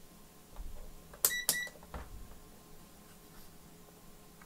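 Two short electronic beeps from a digital multimeter, about a quarter second apart, as its probes are taken up to test the CMOS battery connector. Soft handling thumps come before and after.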